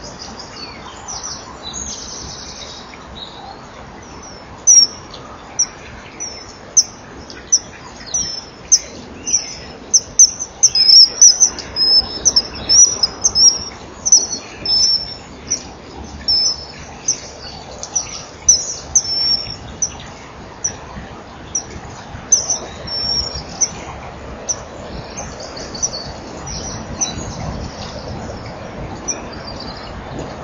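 A bird calling in a long run of short, high-pitched chirps, coming thick and fast and loudest around the middle, then thinning out, over a steady background noise.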